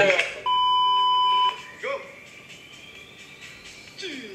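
A single steady electronic bleep lasting about a second, starting about half a second in and cutting off sharply. It is followed by a brief voice sound and quieter background.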